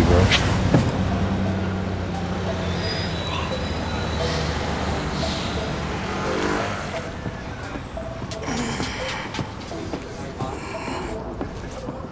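Street ambience with road traffic: a steady low engine hum from passing or idling vehicles, and faint indistinct voices now and then in the second half.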